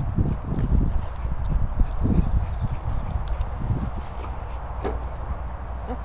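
Low rumbling and irregular thumps from a handheld camera being moved about outdoors, heaviest in the first three seconds.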